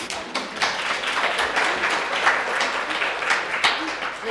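Audience applauding, many hands clapping together. It starts at once and dies away near the end.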